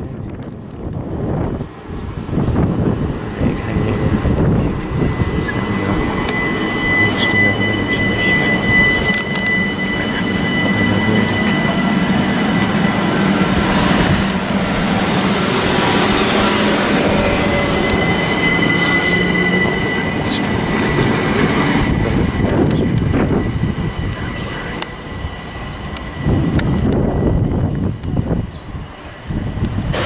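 Southern Class 377 Electrostar electric multiple unit running along the platform, a steady rumble of wheels on rail with a high-pitched whine made of several held tones above it.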